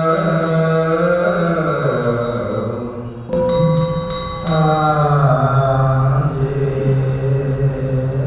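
Buddhist monks chanting a liturgy in sustained tones, the lead voice amplified through a hand-held microphone. Light ritual percussion strikes keep time about three times a second early on, and a bell rings out about three seconds in.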